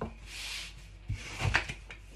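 A long thin wooden rolling pin working a floured sheet of phyllo dough on a wooden board: a soft brushing rub, then a few light wooden knocks about a second in.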